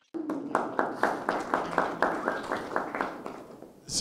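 Audience clapping: a few people applauding at a steady pace, about four claps a second, dying away about three seconds in.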